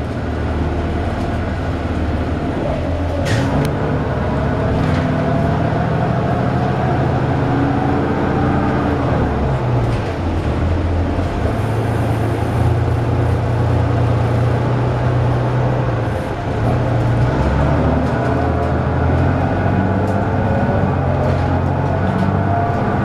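A 2002 Neoplan AN440LF transit bus's Cummins ISL inline-six diesel and Allison B400R automatic transmission running under way, heard from inside the passenger cabin. A whine climbs in pitch twice as the bus pulls, and the sound drops back briefly about ten and sixteen seconds in.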